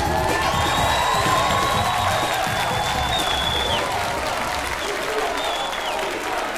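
A live band ends a funk-pop instrumental with saxophone on long held notes while a studio audience applauds and cheers. The beat dies away about halfway through, and the applause carries on.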